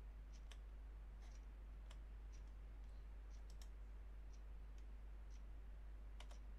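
Faint computer mouse clicks, about ten at irregular intervals, as a character is drawn freehand on screen, over a steady low hum.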